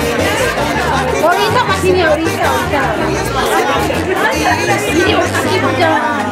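Chatter of many guests talking at once at dinner tables, over music with a low bass line that moves from note to note.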